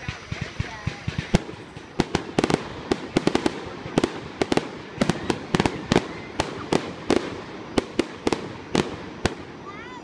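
Aerial fireworks display: a rapid barrage of shell bursts, sharp bangs coming several a second from about two seconds in and keeping up to the end.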